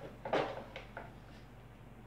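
A few light plastic clicks and knocks from a bagless upright vacuum cleaner being handled after it has been stood upright; the loudest comes about a third of a second in, with two fainter ones before a second in.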